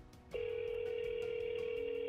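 Ringback tone of an outgoing phone call: one steady electronic ring, beginning about a third of a second in, signalling that the called line is ringing.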